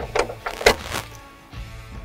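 A few sharp metallic clicks from a key being turned in a water-tank mount lock and pulled out, the loudest about two-thirds of a second in, over soft background music.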